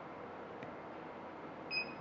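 Low steady room noise, then near the end one short electronic beep from a Multilaser Style car multimedia head unit as its touchscreen is pressed.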